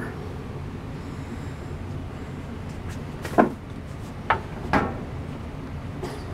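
Three short knocks or clatters, about half a second to a second apart, over a steady low background noise.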